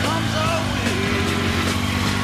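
Yamaha FZ8 motorcycle engine running, mixed with a rock song.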